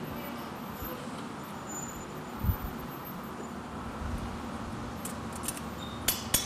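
Steady roar of glass-studio furnaces and glory-hole burners, with a single dull thump about two and a half seconds in. A few sharp clicks come near the end as the finished glass ornament is knocked off the blowpipe.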